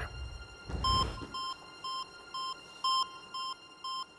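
Electronic heart-monitor beeps of one steady pitch, about two a second, pacing a pulse of roughly 118 beats per minute. A short whoosh comes just before the beeps start, about a second in.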